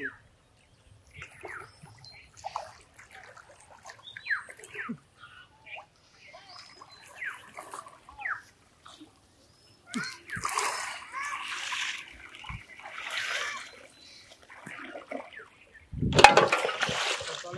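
River water splashing and sloshing as a man wades through waist-deep water with a thrashing caught fish. The splashes are sparse at first and grow louder and denser about ten seconds in.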